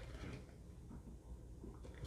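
Faint rustle of hands handling trading cards, with no clear distinct sound standing out.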